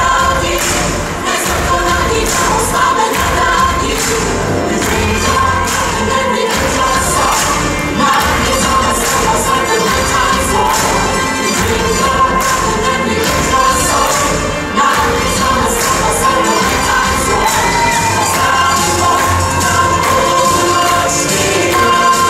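Live musical-theatre finale: the full ensemble singing in chorus over a loud rock-style band with a steady beat, with audience cheering mixed in.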